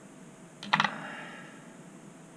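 A small metal sculpting tool set down on a wooden board: a short clatter of several quick clicks with a brief ring, about two-thirds of a second in.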